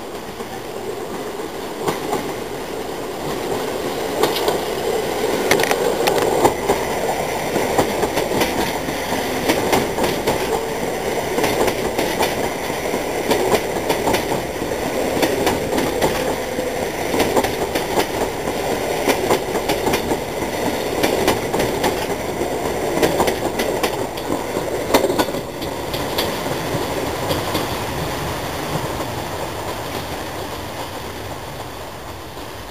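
A train of three coupled EN57 electric multiple units passes close by, its wheels clacking irregularly over rail joints above a steady running rumble. It gets louder over the first few seconds and then holds steady.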